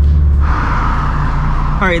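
Subaru BRZ's flat-four engine and road noise inside the cabin of the moving car. About half a second in, the steady engine drone drops away to a lower, rougher pulsing note.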